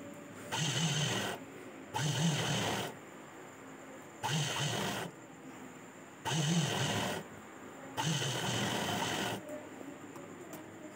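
Sandeep sewing machine stitching in five short runs of about a second each, stopping briefly between them while the fabric is guided under the needle.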